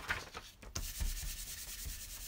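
A hand rubbing across a sheet of paper laid flat on the craft desk: a dry, papery rubbing that grows stronger about a second in, after a couple of light knocks.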